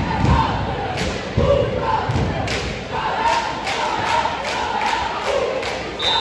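Basketball bouncing on a hardwood gym floor, a few heavy thuds and then a run of sharper bounces about every half second, over the chatter of a crowd in the gym.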